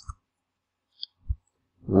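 Two brief, faint clicks in a pause between words: a small high tick about a second in, then a short low knock.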